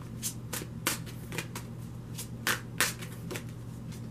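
A deck of tarot cards being shuffled by hand: a run of short, irregular card slaps, the two loudest a little past halfway through.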